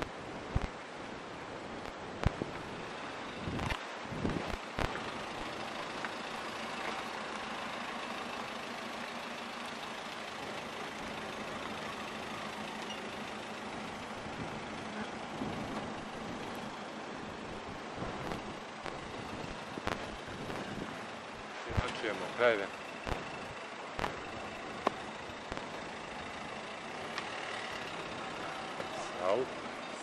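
A small hatchback car's engine running steadily at low speed as the car manoeuvres slowly, with a few sharp clicks and a short spell of voices about two-thirds of the way through.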